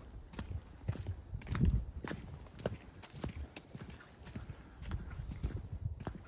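Footsteps of a hiker walking downhill over a dirt trail strewn with dry fallen leaves, each step a short crunch with a low thud, at a steady walking pace.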